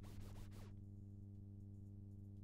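A few short scratch-like pitch sweeps from the DJ decks as the mix ends, stopping under a second in. What remains is a faint, steady low electrical hum from the sound system.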